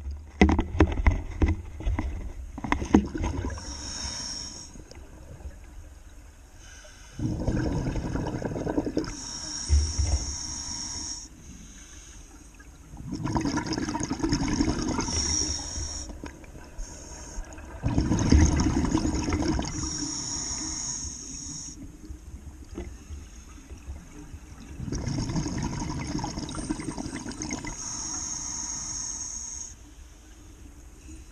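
Scuba regulator breathing underwater. Each exhalation sends out a burst of bubbles lasting two to three seconds, and each inhalation draws a hiss of air through the regulator, with a breath about every five to six seconds. There is crackling in the first few seconds.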